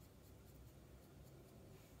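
Near silence, with a faint brushing of a spoolie brush over the skin of the back of a hand as it softens drawn-on brow strokes.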